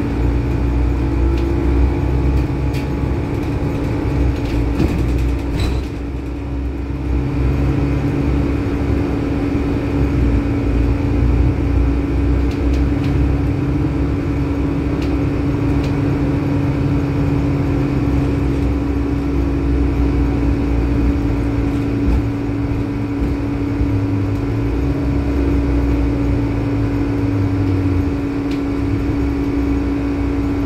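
Cabin sound inside a moving Volvo B12BLE bus: the rear-mounted diesel engine drones low, its pitch stepping up and down with speed and gear changes, under a steady loud hum from the air conditioning, which is noisy enough to drown out talk.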